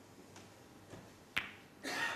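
Snooker cue ball striking the yellow ball: one sharp click about one and a half seconds in.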